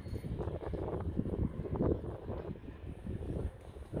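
Wind on the microphone over a low steady hum, with irregular knocks from footsteps along a boat's side deck.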